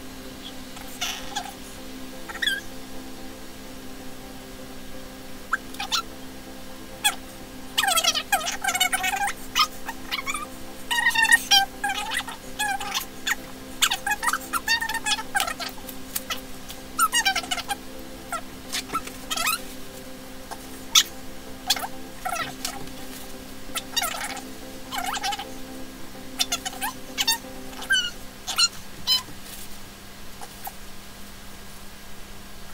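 Dye-covered disposable gloves crinkling and squeaking in irregular bursts as they are peeled off the hands and balled up, over a steady low background drone.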